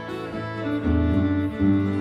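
Fiddle and acoustic guitar playing live together, the guitar's low notes coming in stronger about a second in.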